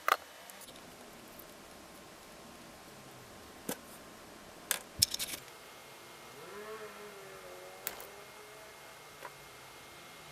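Wire stripper clicking and snipping on thin insulated wires: scattered sharp snaps, the loudest just after the start and about halfway. A short faint wavering tone comes in between them.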